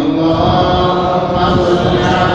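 A man's voice chanting in long, held tones.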